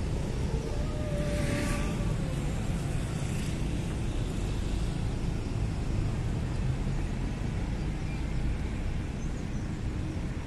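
Steady road-traffic rumble from a queue of cars on a busy city avenue at rush hour, with a brief, slightly falling whine about a second in.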